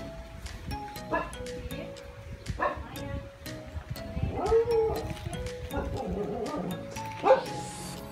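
Background music with a steady beat and held notes, over which a dog barks and yelps a few times, loudest near the end.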